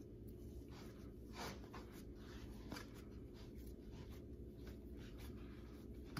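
Faint soft rubbing and light taps of hands rolling and pressing yeast bread dough into a log on a cutting board, over a low steady background hum.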